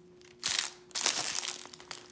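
Clear cellophane wrapping crinkling as it is pulled off a cardboard tarot card box, in two short bursts.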